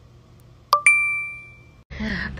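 A two-note ding sound effect: a short lower chime, then a higher chime a moment later that rings on and fades over most of a second.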